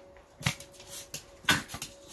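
Small dogs play-wrestling: scuffling with a few short, sharp clicks, the loudest about half a second in and again about a second and a half in.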